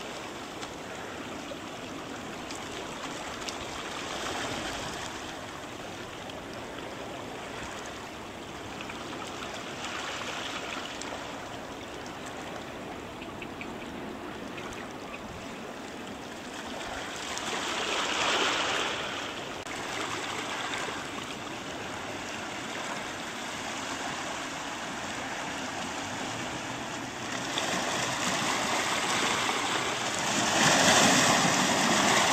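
Small waves washing and trickling over a stony shoreline: a steady rush of water that swells louder about two-thirds of the way through and again near the end.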